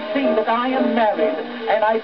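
A male music hall singer's voice with accompaniment, played back from an Edwardian disc record on a gramophone. It has no high treble, as is typical of an early acoustic recording.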